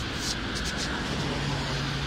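City street traffic: a steady rumble of passing cars on a wet road, with a low engine hum rising out of it about halfway through.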